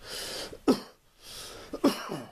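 A man clearing his throat with short coughs, twice, with breathing noise between.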